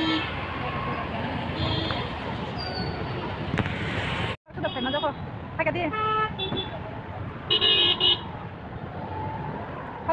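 Busy road traffic with a steady noise of passing vehicles and short vehicle horn toots; after a sudden break the noise gives way to voices, with another brief horn toot.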